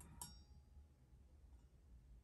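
Near silence: room tone, with two faint light metallic clicks in the first moment as the wire pointer is handled against the degree wheel.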